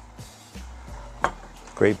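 A glass beer bottle set down on a glass-topped table, one sharp clink a little over a second in, over a low steady hum.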